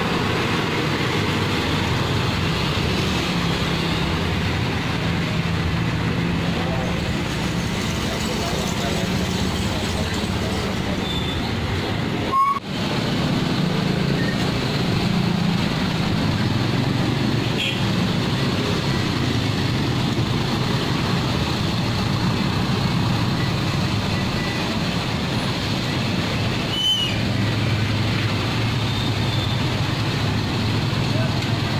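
Road vehicle engines running steadily with traffic noise, a continuous low drone. A sharp click and break about twelve seconds in where the recording cuts.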